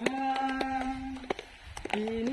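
Singing: a long held note for about the first second, then a short break with a few sharp claps, and the melody picks up again at the very end.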